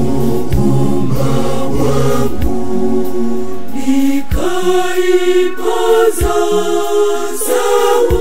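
Mixed choir of men's and women's voices singing a Swahili Lenten hymn in parts, with a deep bass underneath that drops out about halfway, after which a few sharp hits mark the beat.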